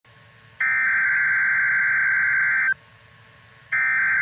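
NOAA Weather Radio SAME header: a buzzy burst of digital data tones about two seconds long, a one-second pause, then the next identical burst starting near the end. The header is the machine-readable code announcing a severe thunderstorm watch (SVA) to alert receivers.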